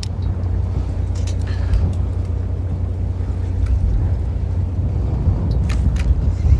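Fishing boat's engine running at idle: a steady, low rumble.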